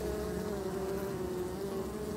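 Many honeybees buzzing at the entrance of their hive, one steady, even hum.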